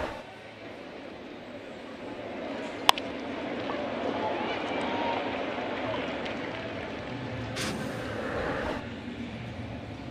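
Ballpark crowd murmur with one sharp crack of a bat hitting a hard ground ball about three seconds in. A faint double click follows, the ball glancing off a bare hand and into a fielder's glove.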